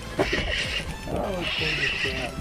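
Seabirds calling over the water in a quick run of short notes that glide up and down.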